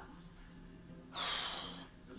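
A single audible breath from a tired woman, a short airy huff lasting under a second, about halfway through a pause in her talk.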